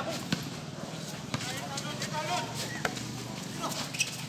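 Basketball dribbled on an outdoor concrete court: a few separate sharp bounces, with faint shouting voices in the background.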